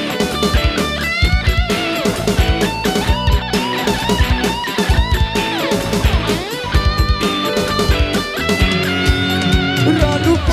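Live rock band playing an instrumental passage: an electric guitar lead line full of pitch bends and slides over a steady drum beat.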